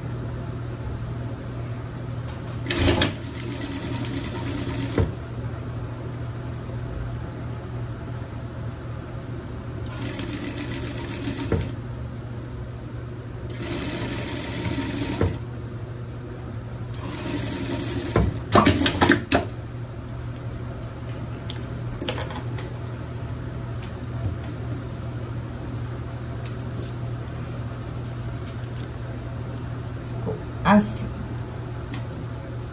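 Sewing machine stitching fabric in four short runs of one to two and a half seconds each, with pauses between while the fabric is repositioned. A few sharp clicks come after the fourth run, over a steady low hum.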